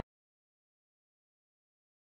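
Silence: the sound track is dead, with the crowd chatter cut off abruptly right at the start.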